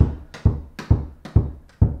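A small rubber ball dribbled one-handed on carpet: five dull thumps, about two a second.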